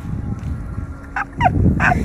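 A man laughing hard in short, rapid bursts, falling in pitch, that come in clusters past the middle, over a low rumble.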